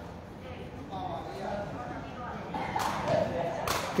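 Background voices of people talking, with a sharp knock near the end as the sepak takraw ball is kicked.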